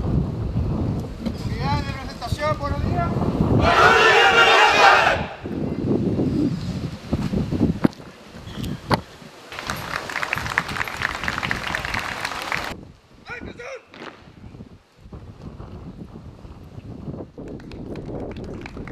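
Wind rumbling on the microphone, then a loud shouted military command about four seconds in. Near the middle comes about three seconds of crowd applause, after which it goes quieter.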